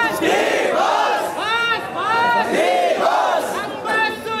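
A crowd of young men shouting together in repeated loud cries, many voices overlapping, fans cheering and chanting in a packed street crowd.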